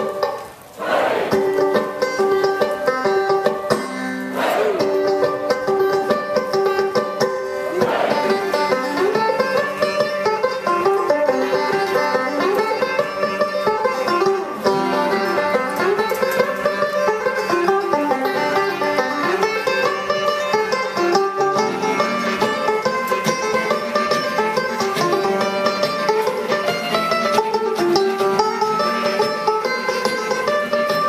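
Live folk tune on banjo and harmonica. The banjo strikes three ringing chords a few seconds apart, the first about a second in, then the two instruments play a busy running tune together.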